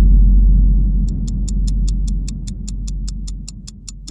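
Edited sound effect: a deep boom that drops in pitch and fades into a long low rumble, joined about a second in by a clock ticking fast, about six ticks a second, under a countdown title card.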